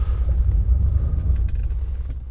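Bentley Turbo R's turbocharged 6.75-litre V8 running, heard from inside the cabin as a steady low rumble.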